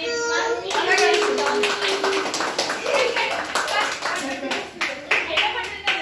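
A group of children and adults clapping, with many quick, uneven claps starting about a second in, over children's excited voices.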